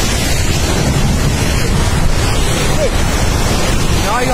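Landslide of mud and rock pouring down a steep slope: a loud, steady rushing noise, with a brief human call near the end.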